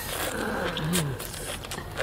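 A man's low closed-mouth 'mmm' with his mouth full, rising and then falling in pitch, as he bites and chews a leaf-wrapped mouthful, with a few faint chewing clicks.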